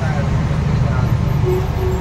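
Steady low rumble of a truck's engine and road noise heard inside the cab while driving, with a faint held tone near the end.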